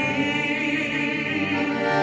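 A man singing with vibrato to his own piano accordion accompaniment; the notes are held without a break.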